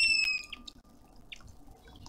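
A bird gives a loud, clear whistled note, slightly falling and about half a second long, at the start. Then water trickles and drips steadily from a small garden fountain, with a few short faint chirps.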